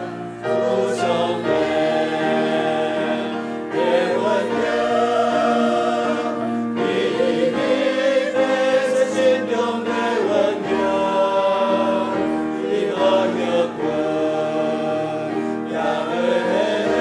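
Mixed choir of women's and men's voices singing a hymn together, in long held phrases with brief breaks between them.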